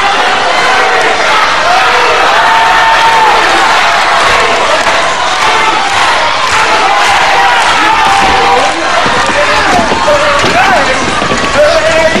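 Crowd in a wrestling hall, many voices shouting and calling out together, with a few thumps of bodies on the ring canvas in the second half.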